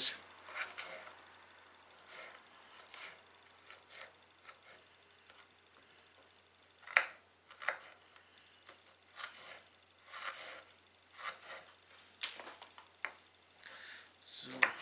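A knife dicing an onion on a cutting board: quiet, irregular taps and cuts, with one sharper knock about seven seconds in.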